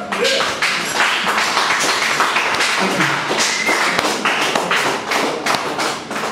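Small audience applauding at the end of a song, individual hand claps distinct and dense, thinning out near the end.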